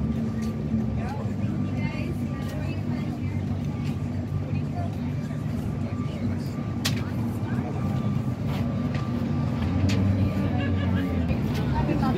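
Downtown street ambience: a steady low hum of road traffic and an idling engine, with indistinct voices of people nearby and a sharp click about seven seconds in.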